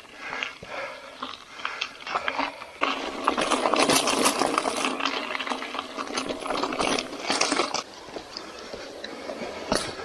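Mountain bike tyres crunching over loose gravel, with the bike rattling. The crunching grows louder about three seconds in and eases off near the end.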